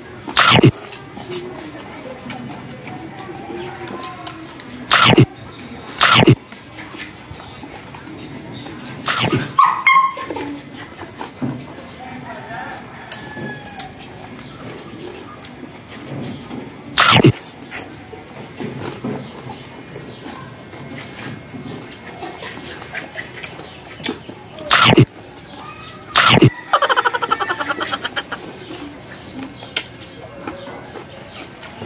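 Close-up eating sounds of roasted pork leg being chewed and smacked. About seven loud, short crunches or smacks stand out, with a quick rapid run of them near the end.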